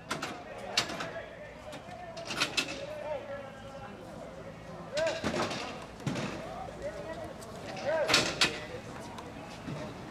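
Distant voices of players and spectators calling across an outdoor rink, with scattered sharp knocks of sticks and ball, the loudest about five and eight seconds in.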